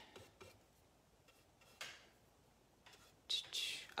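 Mostly quiet, with a few faint taps and scrapes of a paintbrush working acrylic paint on canvas and palette, and a soft breath near the end.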